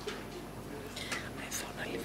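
Faint whispering and low murmured speech among people in a meeting room, in a lull between spoken items.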